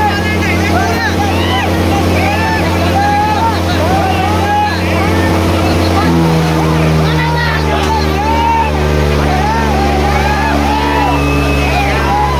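Diesel tractor engines running hard under load in a tractor tug-of-war (tochan), their steady note shifting about halfway through, over a crowd shouting.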